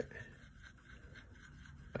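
Faint scraping of a thin paintbrush stirring red into yellow paint in the well of a plastic palette, over quiet room tone.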